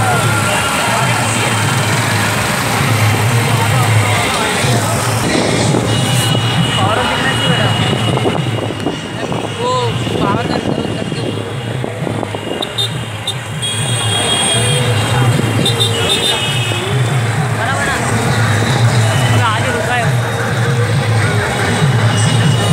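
Engines of many motorcycles and scooters running in a slow procession, heard from one of the moving bikes, with people's voices calling out over them throughout.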